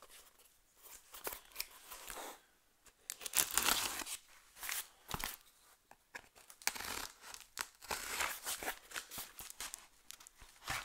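A knife slicing open a cardboard mail package: irregular scraping and tearing of cardboard and tape, with some crinkling, in short bursts.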